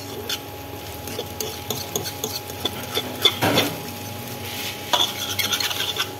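Chow mein noodles being stir-fried in a wok: a utensil scraping and clicking against the pan over a faint sizzle. A louder scrape comes about three and a half seconds in, and a quick run of clicks near the end.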